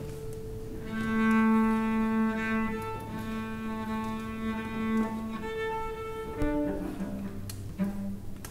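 Bowed strings of a piano quartet (violin, viola and cello) holding long sustained notes. A low cello note sounds twice under a steady higher note, and the notes change near the end.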